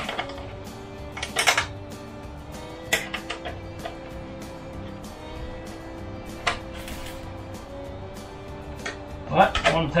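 Scattered metallic clinks of a box-end wrench on the fairing's bracket bolts as they are given a light turn, the loudest about a second and a half in and again at about three seconds, over steady background music.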